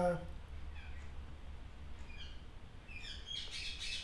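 A bird chirping: a few short falling chirps spaced apart, then a quicker, busier run of high chirps near the end, over a low steady hum.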